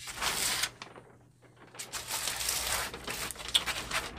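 Handling noise: two stretches of rustling and scraping, the first about half a second long and the second about a second and a half, with a quiet gap between.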